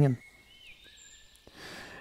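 Faint forest birdsong: a few thin, high chirps and whistles, one sliding down in pitch, over quiet woodland ambience. Near the end comes a man's breath drawn in.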